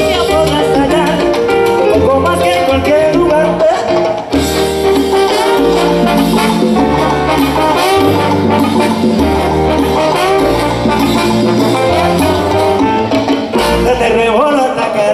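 Live salsa orchestra playing an instrumental passage, with the horn section carrying the melody over congas, timbales and bass. The band makes a brief break about four seconds in, then comes back in.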